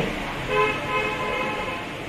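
A vehicle horn sounding one steady note for about a second and a half, starting about half a second in.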